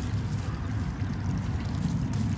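A steady low rumble like wind on the microphone, with faint crumbling and rustling of gritty potting mix as gloved hands and a small tool clear it from a plant's roots.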